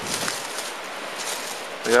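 Sea surf washing over a rocky shoreline: a steady rushing noise. A man's voice cuts in briefly at the very end.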